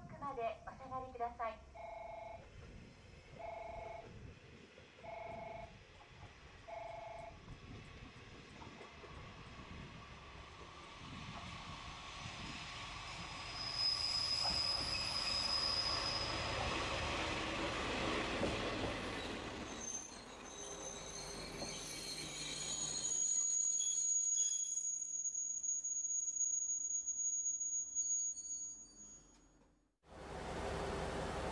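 A JR Shikoku single-car diesel railcar approaches and runs into the station, its sound swelling over several seconds, then its brakes squeal in high, steady tones as it slows. A few seconds in, before it arrives, four short beeps sound about a second and a half apart.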